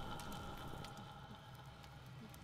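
Film teaser soundtrack playing at low level: a faint sustained drone of several steady held tones, fading slightly, with faint scattered ticks.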